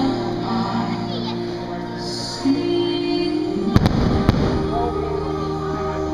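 Firework shells bursting: a few sharp bangs close together a little under four seconds in, over the fireworks show's music soundtrack, which plays throughout.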